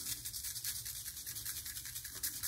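Plastic shaker bottle of dry seasoning rub shaken rapidly and evenly, the granules rattling in the bottle and sprinkling onto raw pork ribs.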